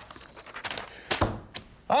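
A dull thump on a studio news desk a little past a second in, with a few lighter knocks and paper rustles around it as sheets of script paper are handled.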